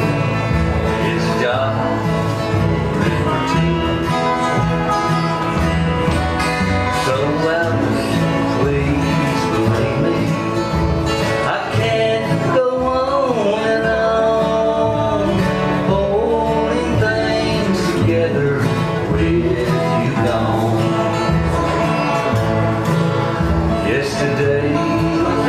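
Live bluegrass band playing: upright bass pulsing under strummed acoustic guitars, with a resonator guitar (dobro) sliding between notes.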